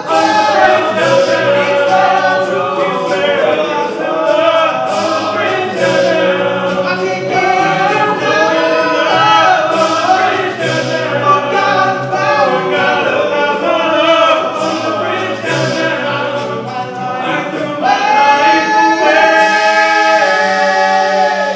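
All-male a cappella group singing live, several voices in close harmony with no instruments. It swells into a louder held chord near the end.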